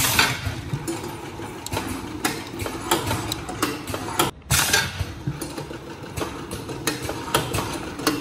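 Automatic jar film-sealing machine running, its conveyor and press mechanism making a steady mechanical noise with frequent clicks and knocks. The sound drops out suddenly for a moment about four seconds in.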